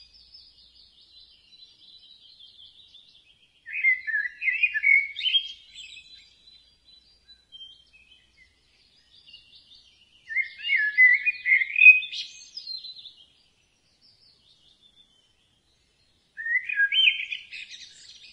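Birds singing: three loud, warbling phrases of song about four seconds in, about ten seconds in, and near the end, with faint twittering in between.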